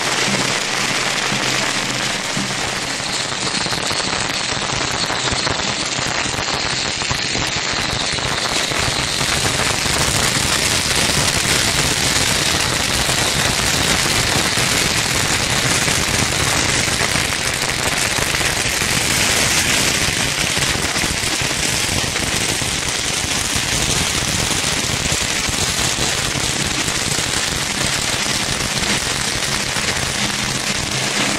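String firecrackers going off in a dense, unbroken crackle of rapid small bangs.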